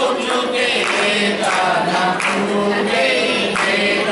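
A group of men and women singing a devotional chant together, keeping time with hand claps.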